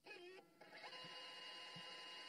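Near silence: a faint steady hum in which two thin high tones hold steady from about a second in.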